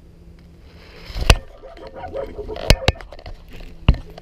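Several sharp knocks with rustling between them, the loudest about a second in and near the three-second mark: fishing rod, reel and clothing handled right against a body-mounted camera.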